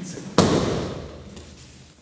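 A single loud thud of a body landing on the dojo mat in a backward breakfall, about half a second in, dying away over about a second.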